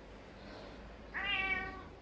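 A domestic cat meows once, a single call of under a second starting just after a second in.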